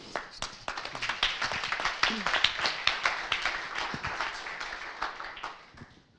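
Audience applauding: a dense patter of handclaps that thins out and fades away near the end.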